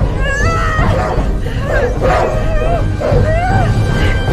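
A wolf yelping and whimpering in a close fight, with a woman's strained cries among its yelps. The cries come as short pitched yelps, several bending sharply up and down, over a steady low rumble.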